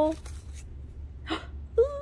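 A woman's voice: the end of a drawn-out word, a short breathy sound about two-thirds through, then a rising-and-falling exclamation near the end, over a steady low hum.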